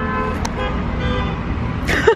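Steady low rumble of road traffic on a busy city street.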